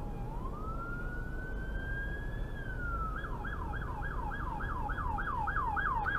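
Emergency vehicle siren: a slow wail that rises, holds and falls, then switches about halfway through to a fast yelp of about four sweeps a second, over the low rumble of the idling car.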